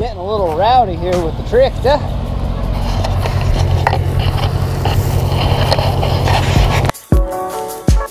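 An old farm tractor's engine running steadily and growing louder, after a few seconds of a man's warbling, sing-song voice. About a second before the end it cuts abruptly to music with a steady drum beat.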